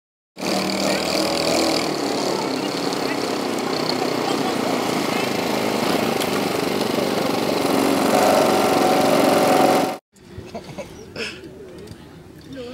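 Go-kart engines running steadily, with people's voices mixed in; the sound cuts off abruptly about ten seconds in.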